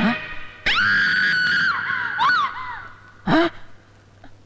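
A high-pitched scream that holds for about a second, then wavers and drops away. A short, lower cry follows about three seconds in.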